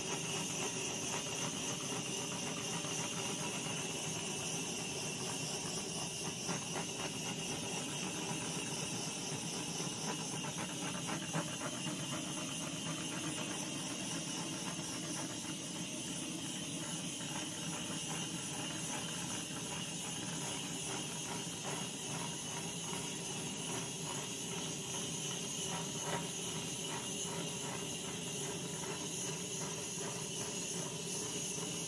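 Handheld butane gas torch burning with a steady hiss, its flame passed over wet acrylic pour paint to pop surface bubbles.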